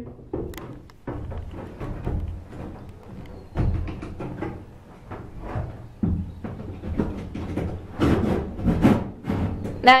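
Irregular knocks and thumps on the wooden boat cabin, heard from inside, with a cluster of sharper, louder knocks about eight seconds in.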